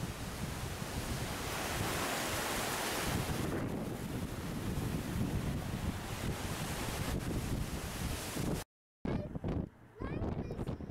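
Strong, gusty wind buffeting the microphone over the rush of ocean surf, the wind of an approaching tropical storm. The sound cuts out briefly near the end.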